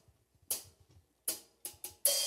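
Percussion count-in: four short, sharp clicks, the last two quicker, leading the forró band into the next song, which comes in at the very end.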